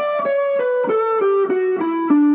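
Semi-hollow electric guitar playing a descending A mixolydian scale run, single picked notes stepping evenly down in pitch, about eight notes in two seconds.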